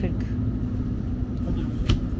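Steady low hum and rumble of a supermarket aisle beside chest freezers, with one sharp knock near the end.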